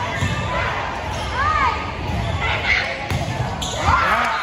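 Volleyball rally in an echoing gym: repeated low thuds of the ball and players' feet on the hardwood court, with short rising-and-falling squeaks of sneakers about a second and a half in and again near the end, over voices in the hall.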